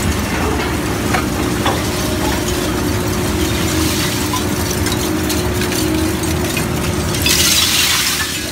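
Slow-speed shear-type wire shredder and grapple material handler running steadily with a low hum and scattered small clicks. Near the end comes a louder rush as shredded wire pieces spill from the grapple onto the pile.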